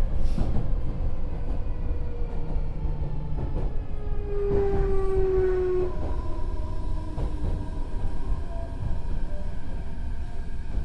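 Meitetsu 4000 series electric train heard from inside the car, slowing down. Its VVVF inverter and traction motors whine in several tones that slowly fall in pitch under braking, over a steady rumble of wheels on rail.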